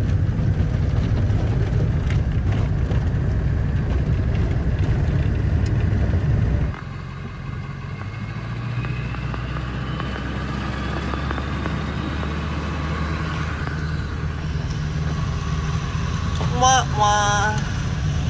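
Ford Super Duty pickup with a 7.3 L Power Stroke turbodiesel V8, heard from inside the cab while driving: a steady engine and road rumble. About seven seconds in it drops sharply to a quieter, lower rumble.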